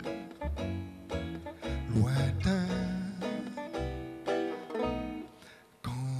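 Banjo plucking a slow melody with a small jazz band (double bass, drums, piano) behind it. The music thins almost to silence for a moment just before the end, then comes back in.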